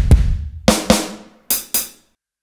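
Drum samples played from the Roland FA-08 workstation's sampler pads: two kick drum hits, then two snare hits a little under a second in, then two hi-hat hits near the end. The samples were taken from the workstation's built-in drum sounds.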